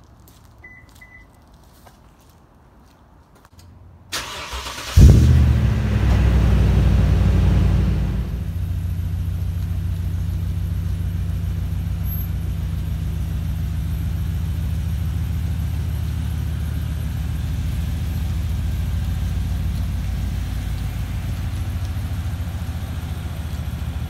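2015 Toyota Tundra's 5.7-litre V8, fitted with a TRD dual exhaust, is cranked and starts about four seconds in. It flares up loudly as it catches and holds a fast idle for a few seconds, then settles to a steady idle.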